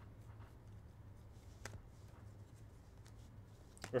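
Faint soft ticks and slides of chrome-finish trading cards being flipped through by hand, a few scattered clicks over a low steady hum. A man's voice starts at the very end.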